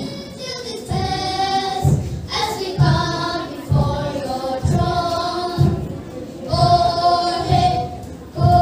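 A group of boys singing together, with a low thud keeping time about once a second.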